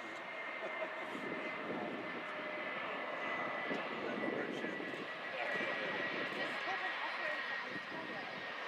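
Airbus A330 airliner's twin turbofan engines running as it rolls along the runway: a steady high whine over a rushing noise, the whine sinking slightly in pitch.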